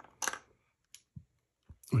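A few small, separate clicks and light knocks of AAA batteries and hard plastic being handled as they are fitted into the battery compartment of an Avon M50 gas mask voice amplifier.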